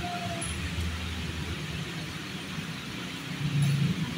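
Steady low vehicle-like rumble with an even hiss over it, swelling slightly shortly before the end.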